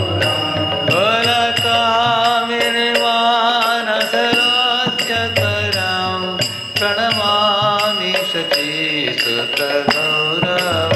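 A man singing a Sanskrit devotional hymn into a microphone, in long melodic lines, keeping time on karatalas (small brass hand cymbals) struck in a steady rhythm.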